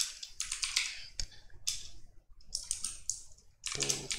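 Computer keyboard keystrokes, an irregular run of separate key clicks with a short pause a little past halfway.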